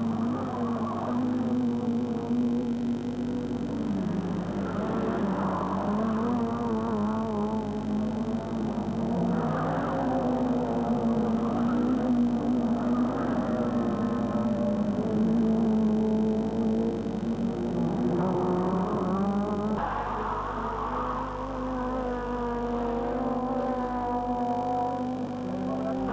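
Group N touring car engines held at high revs, a steady droning note with overtones. The note drops briefly about four seconds in and climbs back, and shifts a little in pitch later on.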